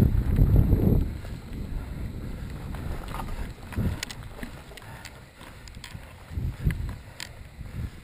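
Mountain bike rolling over a dirt singletrack at night, heard from a rider-mounted camera: loud wind buffeting on the microphone for about the first second, then a quieter tyre rumble with a few thumps and sharp clicks from bumps on the trail.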